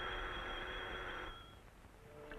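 Old telephone bell ringing: a single ring that starts sharply, holds steady for just over a second, then cuts off.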